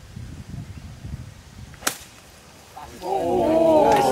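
One sharp crack of a golf club striking the ball, a little under two seconds in. About a second later several spectators' voices start up at once and get louder.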